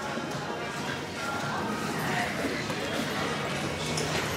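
Indoor background ambience: indistinct voices with faint music underneath.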